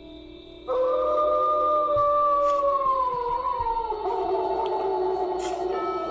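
A long howl, a Sasquatch-call sound effect, over a music bed. It starts about a second in, holds its pitch, then slowly falls in pitch near the middle.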